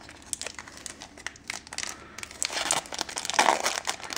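A foil Magic: The Gathering booster pack wrapper crinkling and tearing open in the hands: scattered crackles at first, denser and louder crinkling in the second half.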